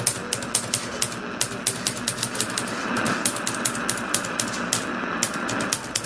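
Typing sound effect: rapid, irregular key clicks, several a second, over a steady hiss.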